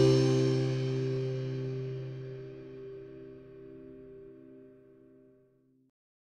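Background music: a held chord fading slowly away, dying out about five seconds in.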